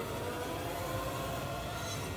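Sustained background-score drone for a dramatic moment, swelling gradually in loudness and then holding steady.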